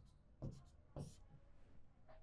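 Faint marker pen strokes on a whiteboard: a few short scratches, the clearest about half a second and a second in.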